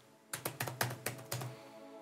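Typing on a laptop keyboard: a quick run of about a dozen key clicks starting a moment in, over quiet background music.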